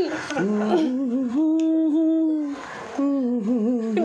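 A person humming a slow tune in long held notes, with a short break about two and a half seconds in.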